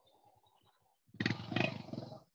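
A loud, rough, buzzing noise of about one second, starting about a second in, coming through a video-call participant's unmuted microphone.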